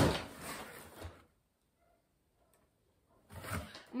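Cardboard boxes knocking and scraping against each other as a packed inner box is pulled out of a larger shipping carton: a sharp knock at the start, then about a second of rustling. The sound then stops for about two seconds, and a short noise follows near the end.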